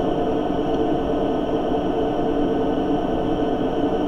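Steady background hum and hiss with several faint constant tones held throughout, with no separate event.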